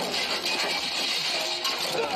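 Animated action-scene sound effects from the episode soundtrack: a sudden, steady rush of hissing noise, like a blast or weapons fire, with faint music under it.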